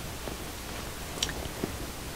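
Steady low hiss of room noise in a pause between speech, with one faint small click a little past halfway.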